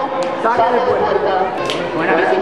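People talking, with overlapping chatter from more than one voice.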